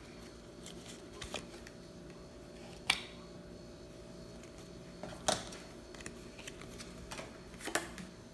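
Thick cardboard game cards being handled and set down on a table: a few short, sharp taps and clicks, the loudest about five seconds in, over a faint steady room hum.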